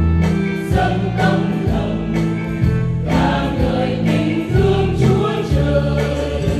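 Church choir singing a Vietnamese Catholic hymn in slow, held phrases.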